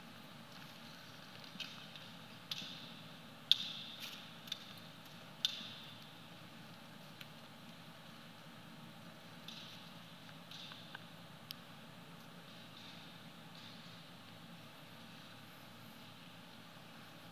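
Quiet room tone of a large gymnasium with a low steady hum, broken by scattered knocks and clacks that echo briefly off the hall; the loudest comes about three and a half seconds in, and a few fainter ones follow near the middle.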